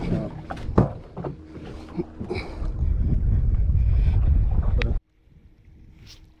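Knocks and bumps of handling on the deck of a small fibreglass fishing boat, then a loud low rumble of wind buffeting the microphone for about two seconds that cuts off suddenly.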